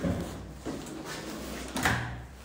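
A wooden apartment door being worked by its lever handle, with a short, louder clunk of the handle and latch near the end as the door is opened.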